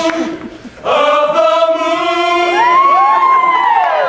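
Male a cappella group singing a held chord that breaks off just after the start. About a second in a new sustained chord comes in, with one voice sliding up and back down above it near the end.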